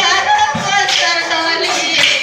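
A woman's voice singing a Nagara Naam devotional chant with wavering held notes, over percussion strikes, one a low thump about half a second in.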